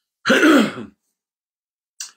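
A man clearing his throat once, a single short burst of under a second.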